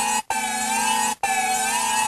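A siren sound effect in an electronic dance mix: a wavering, warbling tone repeated in identical pieces about a second long, each cut off by a brief silent gap.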